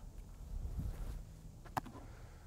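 Faint low outdoor rumble, then one sharp pop near the end: a baseball smacking into the catcher's mitt after a fastball.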